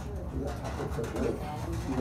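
A man's short, low, strained hums and grunts while straining in an arm-wrestling hold, over a steady low hum.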